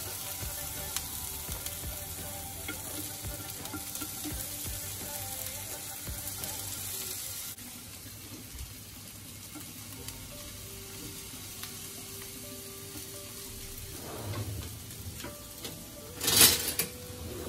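Strips of green capsicum sizzling as they fry in oil in a non-stick pan. The sizzle is steady and drops a little about halfway through.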